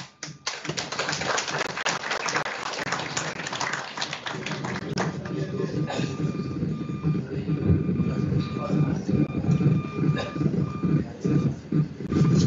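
Audience applauding for about five seconds, then a roomful of people murmuring and chatting among themselves.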